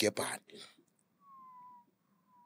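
A few words of a man's speech, then a faint, thin high tone that falls slightly in pitch for about half a second and comes back faintly near the end.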